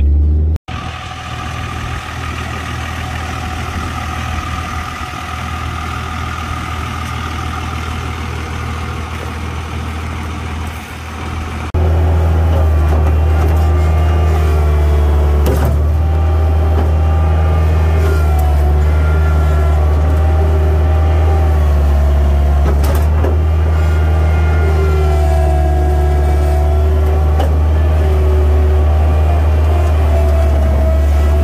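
A steady vehicle engine drone, which jumps abruptly about twelve seconds in to a louder, close diesel engine drone with a wavering higher whine above it. This is the Bobcat 843 skid-steer loader's diesel engine running.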